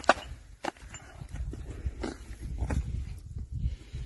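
A strap cutter is drawn along the casing of a UR-77 mine-clearing line charge, slitting the hose open: scraping and tearing broken by several sharp clicks at uneven intervals.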